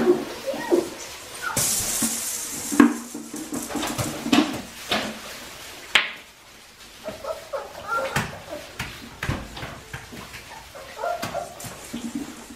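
Australian Shepherd puppies whimpering and yipping in short bursts as they move about, mixed with scattered clicks and knocks. About two seconds in there is a stretch of hissing rustle.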